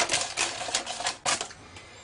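Quick clicks and scrapes of a spatula and a utensil working carrot-cake batter into a cake tin lined with stiff baking paper. The clicks thin out after about a second and a half.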